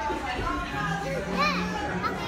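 Restaurant chatter of voices with a child's high voice rising and falling about a second and a half in.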